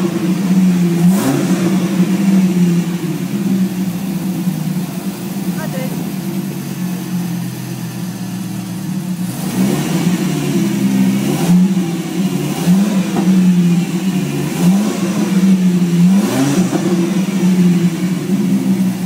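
Jensen Interceptor-based 'Viperceptor' V10 engine running stationary. It holds a steady idle and is given about half a dozen short throttle blips: one about a second in, then a quick series in the second half, each rising sharply and dropping back to idle.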